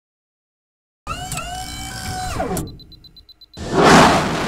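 Animated intro sound effects for a cartoon rocket launch. A synthetic pitched tone holds, then slides down in pitch, followed by a quick run of faint high beeps. Near the end a loud rush of launch noise builds up as the rocket blasts off.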